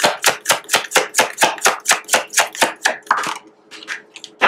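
Tarot deck being shuffled by hand, a fast even run of card slaps about five a second that stops about three seconds in.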